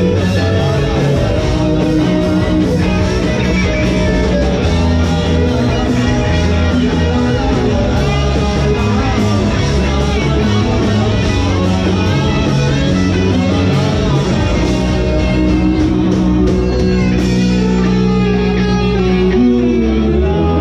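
Rock band playing live: electric guitars over bass and drums in an instrumental passage. Near the end the drum hits stop while the guitars ring on.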